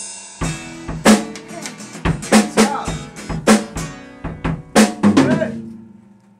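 A beginner playing a drum kit: a loud crash at the start, then single drum strikes at uneven gaps, with ringing between them, dying away near the end.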